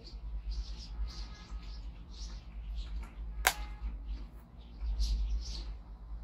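Faint soft rubbing and handling sounds as face cream is squeezed from a plastic tube and worked between the fingers, with one sharp click about three and a half seconds in.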